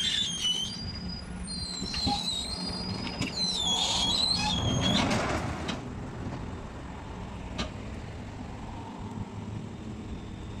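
Rear-loader garbage truck running while loading, with high metallic squeals and creaks through the first six seconds and a louder grinding stretch about five seconds in, then the engine running steadily with a few clicks.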